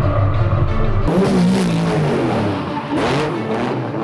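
Historic rally car's engine revving in two bursts, about a second in and again about three seconds in, laid over loud background music with a steady bass.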